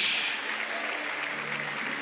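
Congregation applauding: a steady wash of many hands clapping that slowly fades.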